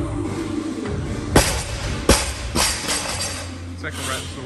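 A loaded barbell with rubber bumper plates dropped onto the gym floor after a snatch. It lands with a hard thud about a second and a half in and bounces twice more, the last bounce weaker. Music plays in the background.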